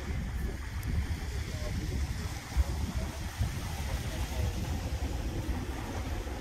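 Small waves washing up a pebble beach, the water rolling the loose stones, under a steady low rumble. There is one brief low thump about two and a half seconds in.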